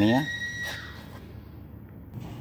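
A man speaks a brief word, together with a high, steady squeal that holds one pitch for under a second and then cuts off. Low background noise follows.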